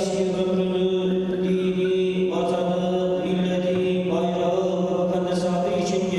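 A man's solo voice chanting a prayer of supplication in long, drawn-out melodic phrases, with new phrases beginning about two and four seconds in, over a steady held low note.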